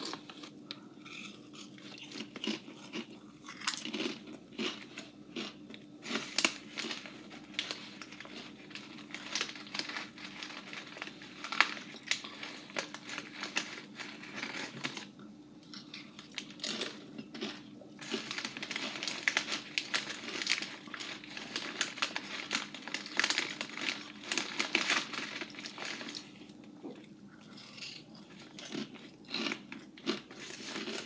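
Crinkling of a plastic potato-skins snack-chip bag as a hand reaches in, mixed with crunching as the chips are bitten and chewed, in irregular crackles and clicks throughout.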